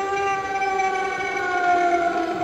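Life-size Lady of the Grave Halloween animatronic's sound effect from its built-in speaker: one long wailing note that slides slowly down in pitch.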